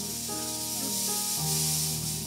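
Stage fog machine jetting out smoke with a steady hiss, over background music with held chords.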